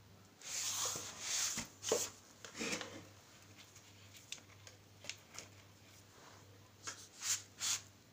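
Grapevine cuttings wrapped in grafting film being handled and set into a bottle among others, rustling and knocking against each other and the bottle: a few bursts of scraping in the first three seconds, scattered light clicks, then two or three short rustles near the end.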